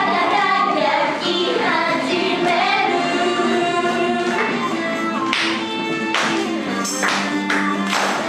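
An upbeat J-pop song with a group of young women singing over a backing track through a PA, with a few sharp percussive hits in the second half.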